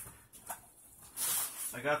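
Packing material rustling as a shipping box is unpacked: a few faint clicks, then a burst of loud rustling lasting about half a second, just past the middle.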